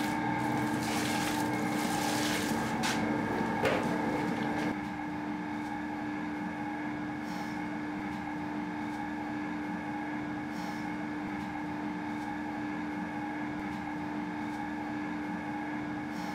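Electric dough-kneading machine running steadily with a constant motor hum as its hook works a stiff dough in a steel bowl. For the first few seconds warm water is poured into the bowl from a bucket, adding a splashing wash over the hum.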